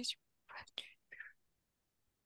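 Faint whispering: a few soft breathy syllables in the first second and a half, then silence.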